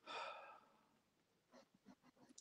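A person's soft sigh, a breath out at the very start that fades within about half a second, then a few faint clicks near the end; otherwise near silence.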